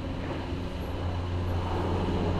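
A steady low hum, with soft rubbing as a microfiber towel wipes spray coating off car paint.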